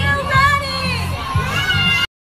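Children shouting and cheering over loud music with a heavy, steady bass line.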